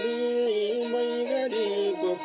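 A man singing a Nepali folk song while bowing a wooden Nepali sarangi, the voice and the bowed strings holding and sliding between notes together.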